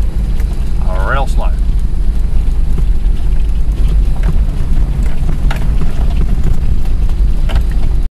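Steady low rumble of vehicles driving slowly over a rough dirt track, heard from the following vehicle, with a few faint knocks from bumps.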